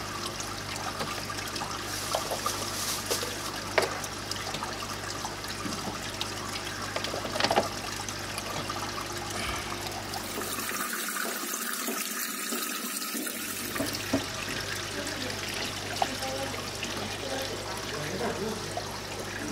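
Water trickling and splashing steadily through an aquarium's top filter tray, its filter wool raised above the water line for wet-dry filtration, over a faint low hum, with a few light clicks.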